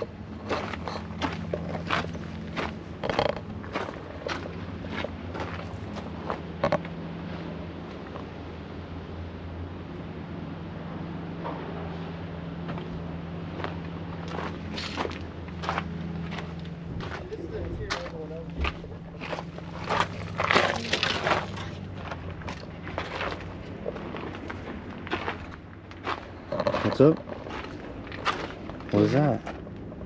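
Footsteps and handling noise on junkyard dirt and gravel: short, uneven crunches and clicks. A steady low hum runs underneath, and brief muffled voices come near the end.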